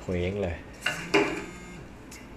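Two short, sharp clinks about a third of a second apart, the second the louder, following a brief spoken word.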